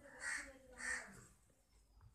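Two short, harsh calls about half a second apart, the second a little longer.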